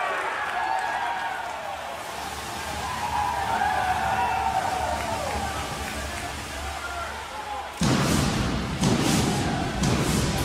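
A group of hockey players cheering and shouting as the Stanley Cup is handed over. About eight seconds in, a sudden loud burst from the arena's stage pyrotechnics cuts in, followed by another sharp burst a second later.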